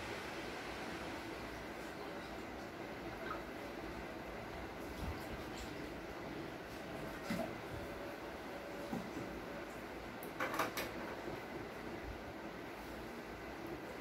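Water being poured from a plastic bottle into drinking glasses, then the bottle being handled and capped, over a steady background hiss. A few light clicks and knocks follow, the loudest a quick pair about ten and a half seconds in.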